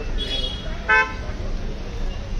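A vehicle horn gives one short, loud toot about halfway through.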